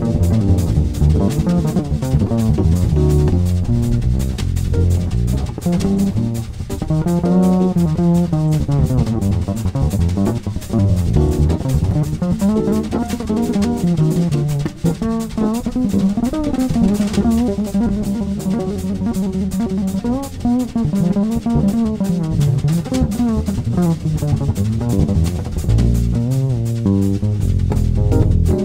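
Bebop jazz played on electric upright bass and a Canopus drum kit: the bass runs a fast, winding melodic line while the drums keep time with steady cymbal strokes and kick and snare accents.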